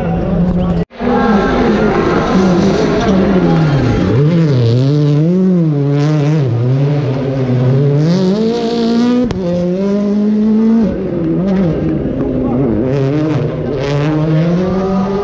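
Rally car engine revving hard, its pitch rising and falling again and again as the throttle is worked through a drift. The sound cuts out for an instant about a second in.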